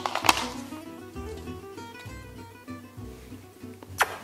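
Background guitar music, with a sharp click just after the start.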